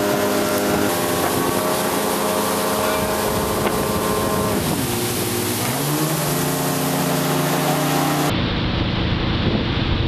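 Motorboat engine running under load while towing, with wind buffeting the microphone; its pitch dips about halfway through, then picks back up to a steady, lower note. Near the end the engine tone gives way abruptly to rushing wind and water noise.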